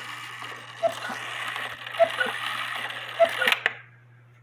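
Cuckoo of a Herbert Herr count-wheel cuckoo quail clock calling the hour: repeated two-note cuckoo calls, high then low, about every 1.2 s. Under them the strike train whirs and clicks, then stops on its own near the end as the count wheel ends the run.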